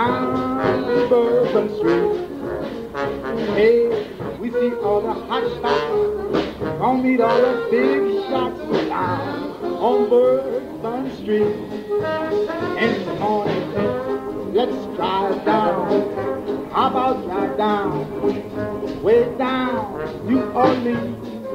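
A New Orleans traditional jazz band playing an instrumental passage at a lively parade tempo: alto saxophone, cornet and trombone weave melodic lines together over a rhythm section of banjo, string bass and drums.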